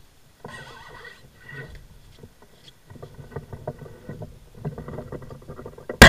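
Faint handling noise from a small action camera being moved and set down: scattered light clicks and rustles, with a brief wavering high tone about half a second to a second and a half in.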